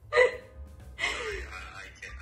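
A woman laughing in two short breathy bursts, like gasps or hiccups; the second, about a second in, trails down in pitch.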